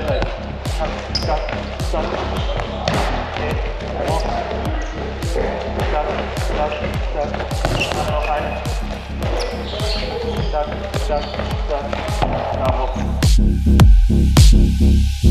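Handballs smacking repeatedly on a wooden sports-hall floor and against the goalkeeper, a couple of sharp hits a second. Music plays underneath, and a louder bass-heavy electronic track comes in about a second before the end.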